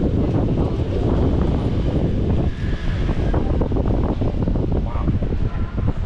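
Wind buffeting the camera's microphone: a loud, steady, low rumbling rush.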